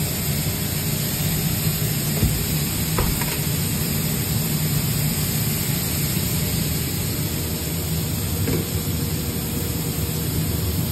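Meat and vegetables sizzling on a hot flat-top griddle, a steady hiss over a low kitchen hum, with a couple of faint metal knocks a few seconds in.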